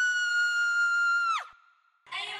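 A single high, steady tone from a sound effect in a dancehall riddim, held for over a second, then dropping sharply in pitch and cutting off about a second and a half in.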